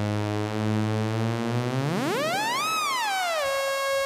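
Bastl Instruments Cinnamon filter self-oscillating as its frequency knob is turned by hand. A low, buzzy synth tone drifts slowly upward, then sweeps steeply up in pitch, peaks about two-thirds of the way in, drops back and settles on a steady held note near the end.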